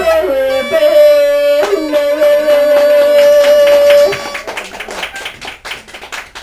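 Bulgarian gaida bagpipe playing the closing phrase of a folk song, holding a long final note over its drone that stops about four seconds in. Hand clapping follows.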